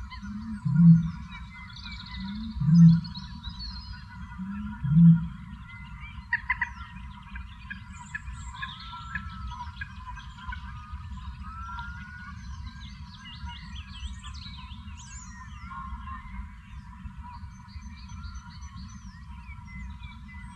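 Male Eurasian bittern booming: three deep, low booms about two seconds apart, each led by a short, slightly higher note, the last ending about five seconds in.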